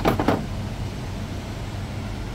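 Plastic top cover of a Dahle paper shredder being set back in place: a quick clatter of two or three knocks right at the start, then only a steady low background rumble.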